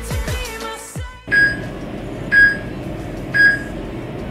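Background pop music cuts off about a second in, then three short high electronic beeps sound one second apart: a workout timer counting down the last seconds of a rest break before the next exercise starts.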